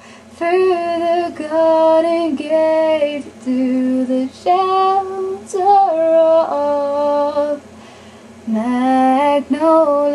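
A woman singing unaccompanied, a run of held notes with short breaths between and a pause of about a second near the end.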